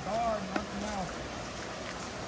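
A man's voice answering faintly from a little way off, over the steady rush of a fast-flowing river.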